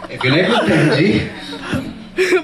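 A performer's voice over a microphone, talking in a drawn-out, rising and falling way with chuckles, quieter toward the end.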